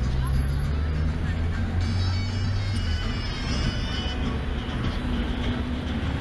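Busy city-square ambience: a steady low drone, heaviest for about the first three seconds, under traffic and voices.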